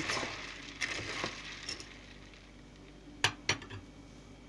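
Metal spoon stirring red beans soaking in water in a plastic bowl: a swishing of water and beans for about a second and a half. A little past three seconds in come a few sharp clinks as the spoon is set down.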